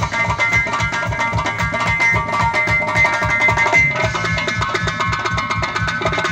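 Several Uzbek doira frame drums played together in a fast, driving rhythm, with a sustained melody line held over them that shifts to new notes about four seconds in.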